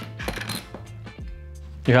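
Soft background music with steady sustained notes, and a few light clicks in the first half second as hardware is lifted out of a foam-lined case.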